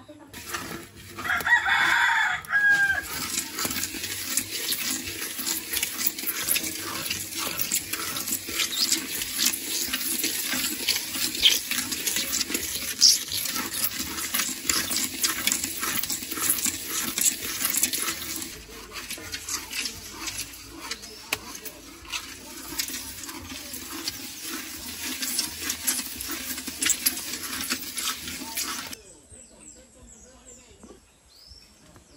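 A rooster crows once about a second and a half in. Then a long utensil scrapes and stirs dry white grains in a large metal pan, a dense, irregular scratching that continues for most of the time and cuts off suddenly near the end.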